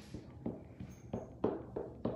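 A StazOn ink pad patted down onto a red rubber stamp to ink it: a series of about five soft, short taps at an uneven pace.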